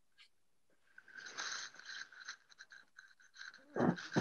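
Irregular crackling and crunching noise close to a participant's open microphone over the video call, starting about a second in, with a louder burst near the end.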